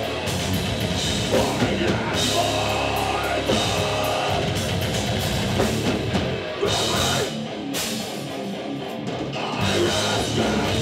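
Live heavy metal band playing loud: distorted electric guitars and bass over a drum kit with crashing cymbals, easing slightly in loudness for a couple of seconds past the middle before picking back up.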